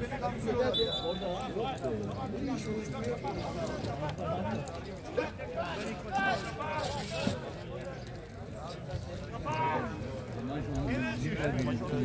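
Men's voices talking and calling out at an open-air football pitch, with a brief high steady tone about a second in.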